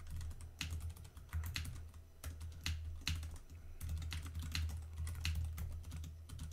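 Typing on a computer keyboard: irregular bursts of keystroke clicks, several a second with short pauses, over a low steady hum.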